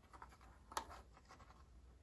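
Faint scraping and light clicks of a plastic teaching clock as its minute hand is turned around the face by finger, with one sharper click about three-quarters of a second in.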